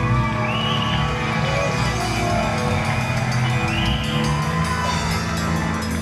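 Live rock band playing with electric guitar, keyboard and drum kit, at a steady loud level.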